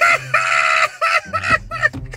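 A man laughing hard, in two bursts.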